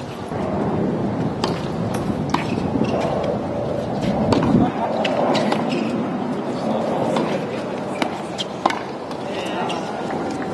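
Tennis ball struck by racquets in a rally on a hard court: sharp pops at irregular intervals, over a steady background of indistinct voices.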